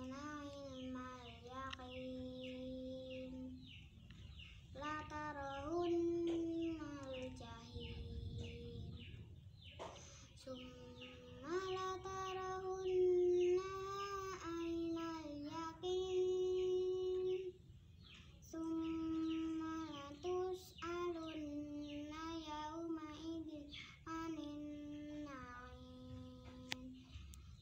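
A young girl reciting Quran verses from memory in a chanted melody, holding long notes and gliding between pitches, pausing briefly for breath a few times.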